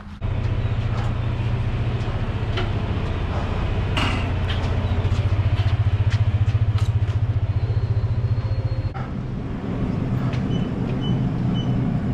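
A loud, steady low mechanical hum, with scattered clicks over it. The hum drops off about nine seconds in and gives way to a weaker hum, with a few faint, evenly spaced high beeps near the end.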